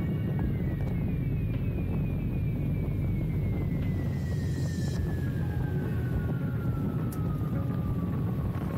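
Riding noise from a Yamaha Ténéré 700 adventure motorcycle on a dirt road: a steady rush of wind and machine noise on the camera microphone. Above it a thin whine falls slowly and steadily in pitch, in a few short steps at first and then in one long slide.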